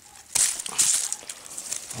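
A sudden crunch about a third of a second in, then about a second of crackling and rustling of dry twigs and fallen leaves, as a blackcurrant stem is cut with pruning loppers and cleared from the base of the bush.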